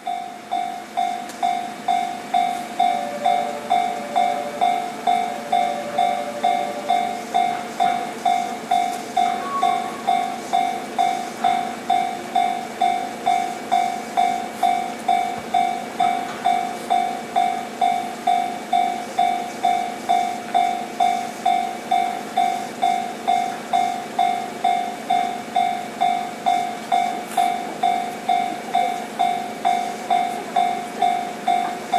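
Railway level-crossing alarm ringing in steady, evenly spaced strokes, a little under two a second, each struck sharply and fading, warning of an approaching train.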